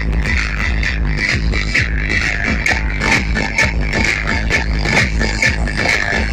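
Loud electronic dance music with a steady, heavy bass beat, played through a DJ sound system's stacked speaker boxes.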